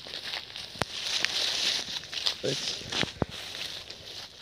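Footsteps and rustling through dry grass and dead leaves, with a few sharp clicks scattered through it.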